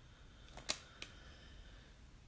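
Two sharp clicks about a third of a second apart, the first louder, over a faint quiet background.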